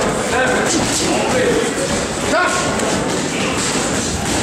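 Boxing gloves thudding as punches land in heavyweight sparring, several thuds over indistinct voices in the gym.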